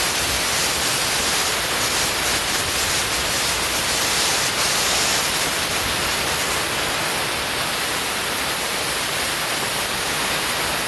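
Steady loud hiss of a hand-held drywall texture sprayer blowing texture, brightest in spells between about a second and a half and five seconds in.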